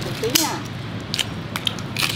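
Cooked lobster shell cracking and snapping in a few sharp clicks as it is pulled apart by hand, with a short voice near the start and chatter behind.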